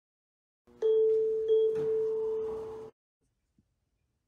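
A bell-like chime tone struck twice, about two-thirds of a second apart, at the same pitch. It rings on and fades, then cuts off suddenly.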